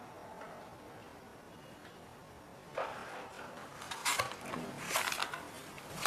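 Quiet room tone, then from about three seconds in a few short, sharp clicks and knocks: footsteps and handling noises of a person carrying a cardboard egg carton.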